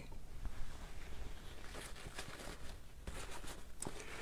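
Faint scratchy rubbing of dry paint being worked on a canvas, in short clusters about two seconds in and again near the end, over a low steady hum.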